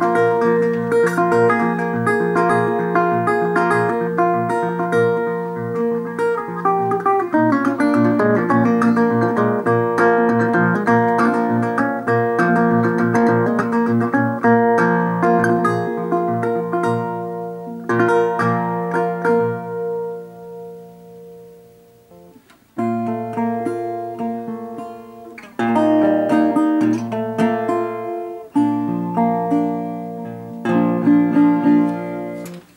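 National Style-O metal-bodied resonator guitar being fingerpicked: plucked melody over sustained bass notes. About two-thirds of the way through the playing stops and the last notes ring out and fade almost to nothing, then a second Style-O starts up abruptly and is played in the same fingerpicked way.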